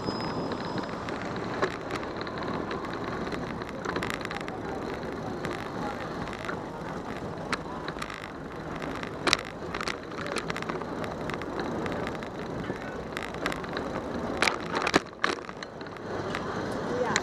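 Riding noise picked up by a camera mounted on a bicycle: a steady wash of tyre and wind noise over pavement, with sharp rattles and clicks from the bike jolting over bumps. The loudest knock comes a little after nine seconds, and a cluster of them follows near the end.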